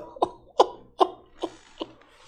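A man laughing in short, sharp bursts of breath, about five of them, getting quieter.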